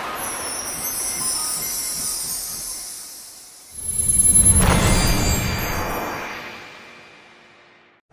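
Logo-intro sound effects: a whooshing sweep with a glittering high shimmer that fades out, then, a little under four seconds in, a deep boom that swells and slowly dies away.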